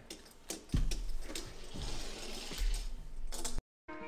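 Uno Attack card launcher's motor whirring, with several sharp clicks and a couple of dull knocks on the table. The sound cuts off abruptly shortly before the end.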